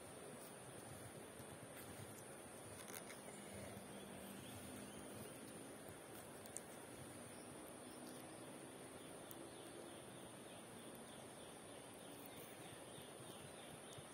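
Near silence: faint outdoor ambience with a steady high-pitched insect drone and a few faint ticks.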